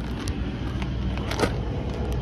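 Footsteps crunching on gravel over a steady low rumble, with one louder crunch about one and a half seconds in.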